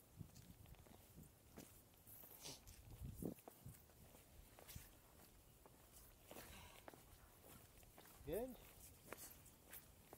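Near silence with faint, scattered footsteps scuffing and tapping on granite, and a brief faint voice about eight seconds in.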